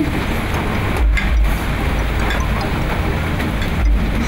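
Background music with a steady rushing noise under it, and a heavier low rumble about a second in and again near the end.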